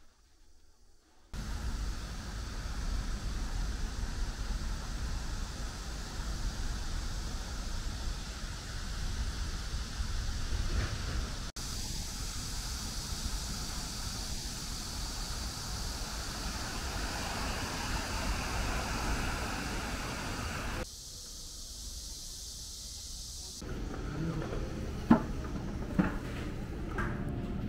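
Steady low rumble and hiss of a moving vehicle heard from inside, after about a second of near silence, with a few sharp clicks near the end.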